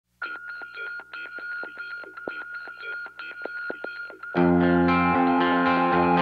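Hard rock song intro: a thin, tinny-sounding picked guitar part with a steady high tone and rapid strokes, then about four seconds in the full band comes in much louder with distorted guitars and a deep low end.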